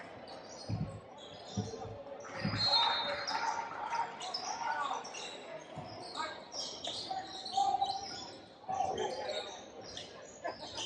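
A basketball bouncing on a hardwood gym floor, three thumps about a second apart in the first few seconds, as at a free-throw routine. Voices and shouts from players and spectators carry through the gym.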